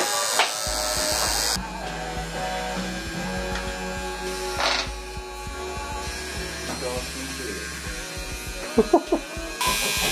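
Electric tattoo machine buzzing steadily as it inks skin, with music playing over it; the buzz stops about eight seconds in.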